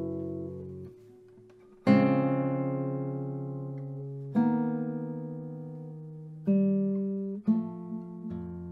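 Solo nylon-string classical guitar playing slow chords that are struck and left to ring out. A chord fades into a brief pause about a second in, then new chords sound roughly every two seconds, with quicker notes near the end.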